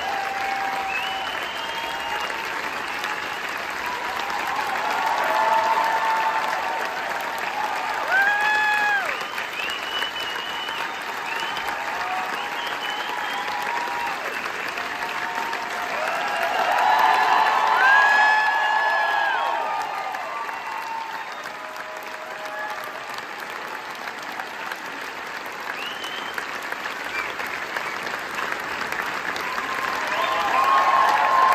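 A theatre audience applauding steadily at a curtain call. A few shouted cheers rise above the clapping, loudest about eight and eighteen seconds in.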